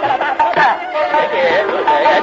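Male Hindustani classical vocalists singing khayal in Raag Darbari: quick, gliding, winding vocal runs over instrumental accompaniment, from a 1961 live concert recording.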